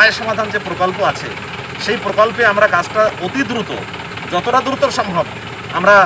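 A man talking inside a car cabin, with the car's engine idling as a steady low hum underneath.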